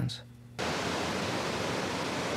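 Steady rushing noise of a waterfall pouring over rock, cutting in suddenly about half a second in after a moment of quiet room tone.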